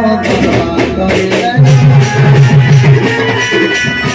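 Sambalpuri folk music with rhythmic percussion and pitched instruments; the heavy low drum beat drops out for about the first second and a half, then comes back in a steady driving pulse.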